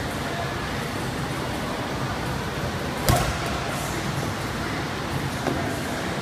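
A medicine ball slammed onto a rubber gym floor: one loud thud about three seconds in, with a softer knock near the end, over a steady background hiss.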